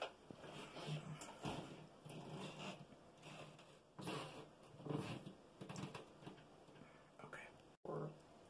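A person whispering faintly in short, broken bursts.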